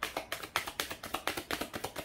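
A deck of tarot cards being hand-shuffled, the cards slapping against each other in a rapid, even run of clicks, several a second.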